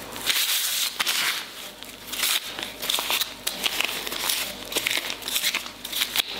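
Thin disposable plastic gloves crinkling and rustling in irregular bursts as the hands gather and squeeze soft semolina dough scraps into a ball.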